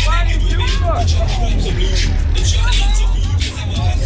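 Loud dance music from a Tagada ride's sound system with a heavy bass beat, over riders shouting and shrieking in the spinning bowl.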